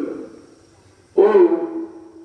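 A man's voice preaching in a melodic, chanted delivery: a short phrase that fades out, then from about a second in a long held note.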